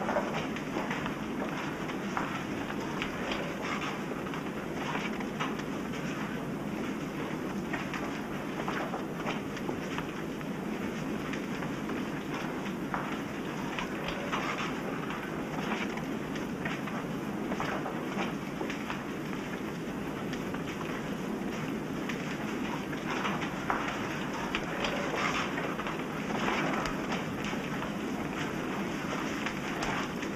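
A crowd of people walking together, a steady dense patter of many footsteps with no one speaking.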